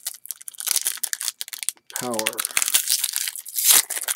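Foil wrapper of a 1993 Pro Set Power football card pack crinkling and tearing as it is ripped open by hand. It is a rapid run of crackles, loudest just before the end.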